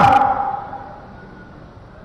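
A man's voice through a public-address system breaks off at the start, its echo fading away over about a second, leaving a quiet pause with only faint background noise.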